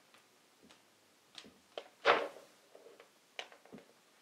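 Light clicks and rustles of white wired earphones being untangled and handled over a desk, with a louder brushing knock about two seconds in.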